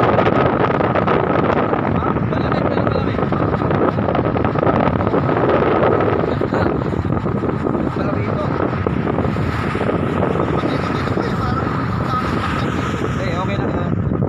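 Wind buffeting the phone's microphone in a loud, steady rumble, with car traffic on the road behind.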